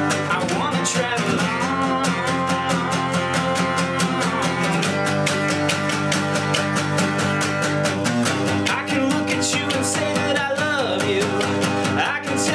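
Acoustic guitar strummed in a steady rhythm, with a man singing a held, sliding melody over it.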